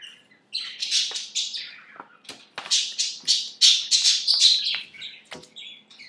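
Pet budgerigars chattering and chirping in a rapid run of high calls that starts about half a second in, is loudest in the middle and tails off near the end.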